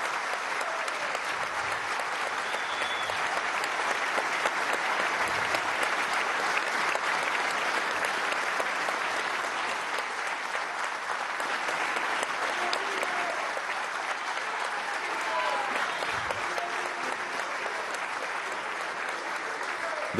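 Sustained applause from a large audience of legislators and gallery spectators, steady throughout, with a few voices calling out within it.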